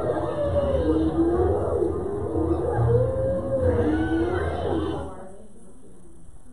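Lions and hyenas calling at a kill: wavering calls that glide up and down in pitch over a low, rumbling growl. They fade out about five seconds in.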